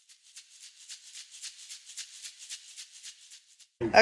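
Shaker percussion in quick, even strokes, about six a second, thin and high with no low end. It swells a little and cuts off just before the end, like a transition music cue.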